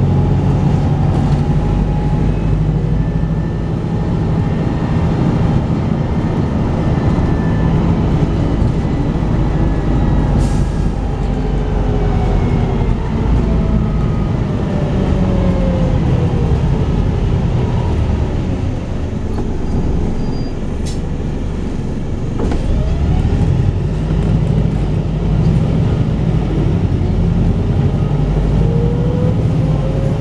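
Volvo B5TL double-decker bus's four-cylinder diesel engine heard from inside the moving bus, with road noise, its pitch sliding down and up as it changes speed. It eases off about two-thirds of the way through as the bus slows for a junction, then pulls again with rising pitch near the end.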